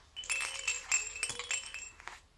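A baby's hand-held toy rattle shaken, jingling and clinking for a little under two seconds.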